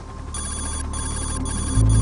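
Electronic telephone-style ringing, four short rings in quick succession, over a low bass rumble that swells and then steps up into a loud, steady bass tone near the end.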